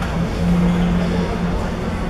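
Indoor hall din with a steady low rumble. A single low held tone sounds for just under a second, starting about half a second in.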